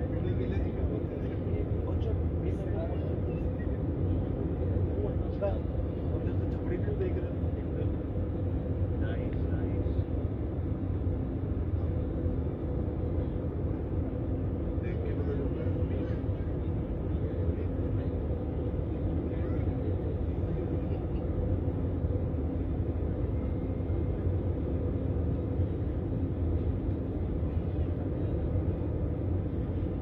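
Airliner cabin noise heard from a window seat over the wing during descent: a steady low drone of jet engines and airflow, with a constant hum tone.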